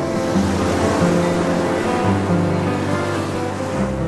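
Surf washing up a sandy beach, an even hiss of breaking foam, under background music with held low notes.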